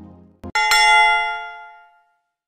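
Soft background music fades out, then a single bell chime rings out and dies away over about a second and a half, signalling that the timed writing sprint is over.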